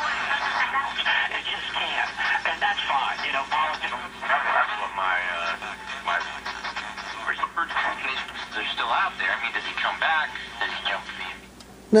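A 1937 Philco 37-2670 tube radio playing an AM broadcast through its speaker: a voice talking, with a steady low hum underneath.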